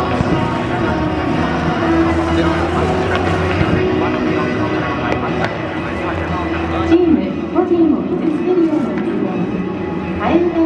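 Busy stadium ambience: many people talking over background music from the public-address system, with a melody rising and falling more plainly in the last few seconds.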